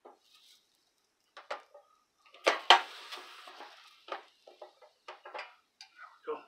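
Brentwood electric tortilla maker: a couple of light knocks, then the lid clacking shut on a ball of corn dough about two and a half seconds in, followed by a hiss that fades over about a second and a half as the wet dough is pressed flat on the hot plate. A few more light knocks follow as the lid is lifted.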